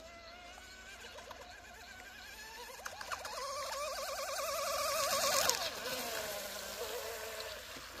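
Brushless electric motor and propeller of an RC outrigger boat running flat out across a pond, heard from a distance: a whine that swells over a few seconds and falls away about five and a half seconds in. Its pitch wobbles quickly up and down as the hull keeps hopping.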